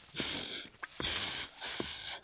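Heavy, noisy breathing from a cartoon character, in about three long breaths with short gaps between them.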